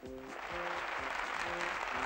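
Audience applause, a steady clatter of clapping that swells in at the start, over a small brass band holding sustained notes.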